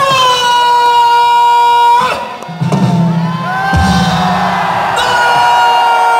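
Long, drawn-out shouted calls, each held on one pitch for a couple of seconds, in the manner of the guards' stretched-out parade commands at the Wagah border ceremony. Overlapping yells from the crowd and a drum beat join in about halfway through.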